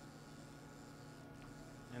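Faint, steady low hum, close to room tone, with no distinct clicks or knocks.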